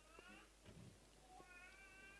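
Near silence with two faint, high-pitched mewing cries: a short one at the start and a longer, steadier one near the end.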